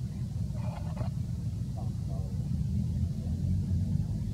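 Steady low rumble, like outdoor traffic or wind on the microphone, with faint distant voices about half a second in and again about two seconds in.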